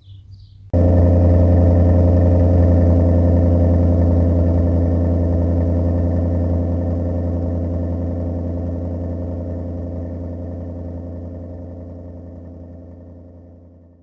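An engine running at a steady speed, with a deep, even drone. It starts abruptly about a second in and slowly fades out.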